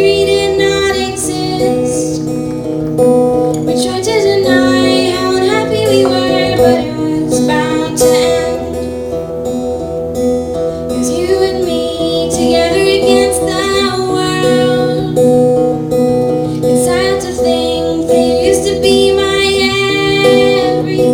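Solo live performance of a slow song: a woman singing phrases over her own strummed guitar, with the guitar's chords ringing between the sung lines.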